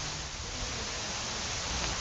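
Steady outdoor background hiss with a low rumble underneath, picked up by an open field microphone.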